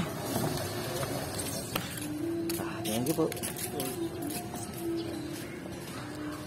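Voices of people in the street in the background, some of them drawn out into long held calls, with a few faint clicks.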